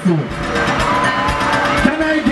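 A sound effect over the concert PA as the soca music breaks: a sharp downward swoop in pitch at the start, then a dense noisy rush with a faint whistle that rises and falls.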